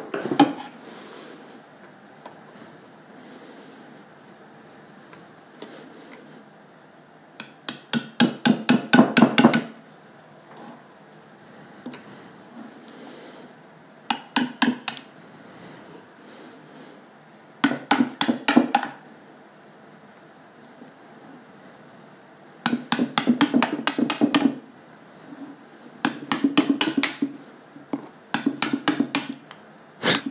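A hammer taps the butt of a screwdriver wedged under the edge of a vacuformed plastic face shell, chipping at it to break the shell off the buck it is stuck to. The taps come in six short bursts of rapid strikes, several a second, with pauses between.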